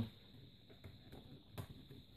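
Faint handling sounds of hands fitting a tablet into a fabric book-style case, stretching an elastic corner strap over it, with a few light taps.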